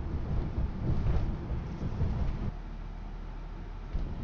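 Low rumble inside a moving car's cabin, picked up through a phone's microphone with wind buffeting on it. About two and a half seconds in, the rough rumble gives way to a steadier low hum.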